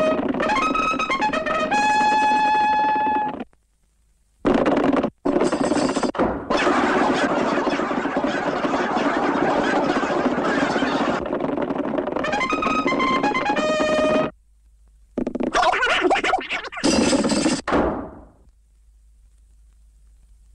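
Cartoon soundtrack: a brass fanfare breaks off after about three seconds, gives way to a long stretch of dense noisy sound effect, briefly returns, and then ends in a few short noisy bursts.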